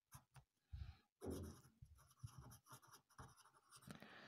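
A pen writing on paper: faint, short, irregular scratches of the pen strokes as a word is written.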